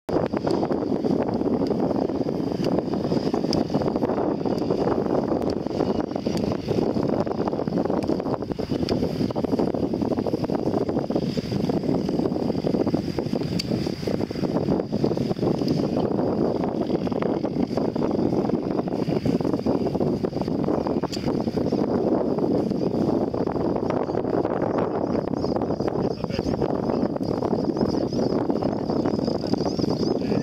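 Steady wind buffeting the microphone.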